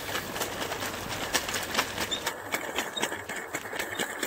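Irregular clicks and knocks of footsteps on a wooden boardwalk, over a background hiss that drops away a little past halfway.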